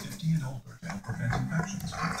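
Labrador–pit bull mix dog growling in low, uneven pulses while guarding a chew bone during a tug-of-war game.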